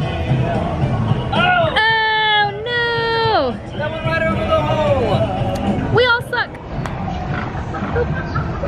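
Long, drawn-out 'ooh' calls from a person's voice over steady crowd babble and background music: two held notes about two seconds in, the second sliding down as it ends, and a shorter wavering one near six seconds.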